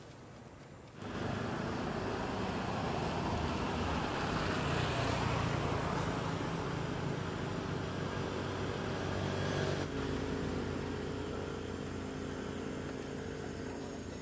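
An engine running steadily with a low hum, starting suddenly about a second in; its tone shifts near ten seconds in.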